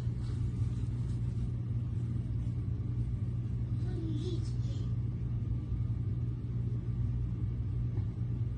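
A steady low rumble, with a faint brief pitched sound about four seconds in.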